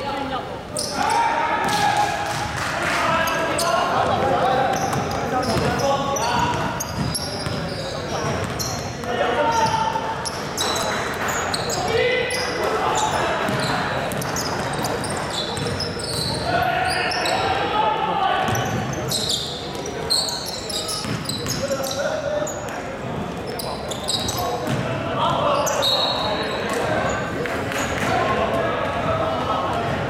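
Voices of players and courtside onlookers talking and calling out throughout, with a basketball bouncing on a hardwood court and other short knocks, in a large sports hall.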